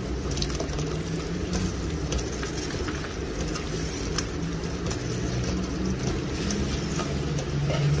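A metal ladle stirring thick liquid food in a large metal pot, lifting it and pouring it back in a stream, with scattered clicks of the ladle against the pot over a steady low hum.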